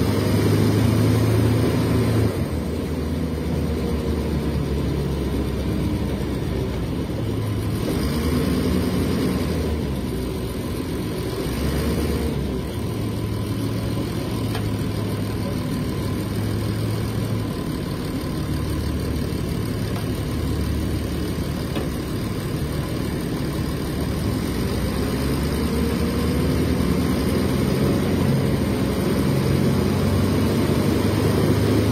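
Mercedes-Benz OM 906 LA inline-six diesel of a Mercedes-Benz O500U city bus, heard from inside the bus, running steadily. Its note rises and falls several times as the engine speeds up and settles.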